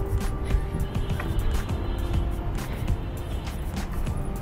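Background music with steady held notes and light percussive ticks, over a low rumble of street noise.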